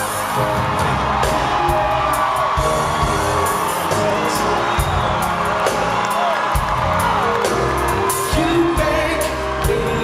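Live R&B band music with keyboards and a steady drum beat, with wordless sung vocals over it.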